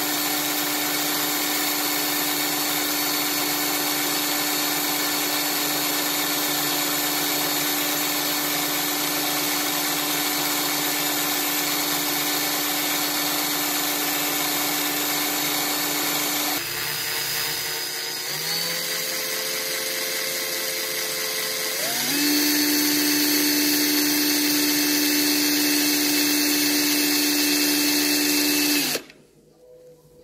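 Cordless drill motor spinning a 24-gauge core wire in its chuck, so that a thin wire wraps around the core to form a Clapton coil. The motor runs with a steady whine, drops in pitch as it slows a little past halfway, climbs to a higher, louder speed about two-thirds in, and stops suddenly a second before the end.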